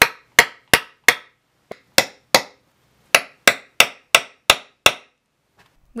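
Hammer blows setting grommets into fabric on a wooden board: about a dozen sharp strikes in quick runs of two to four, roughly three a second, stopping about a second before the end.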